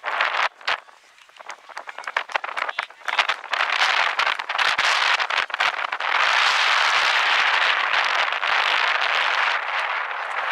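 Spectators on the sideline of a youth soccer match cheering and clapping. Scattered shouts and claps at first build into a steady wash of crowd noise from about six seconds in.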